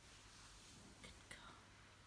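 Near silence: a faint whisper close to the microphone, with two small clicks a little past a second in.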